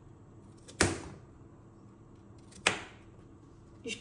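Chef's knife cutting through a vegetable and striking a plastic cutting board twice, each cut a sharp knock, about two seconds apart.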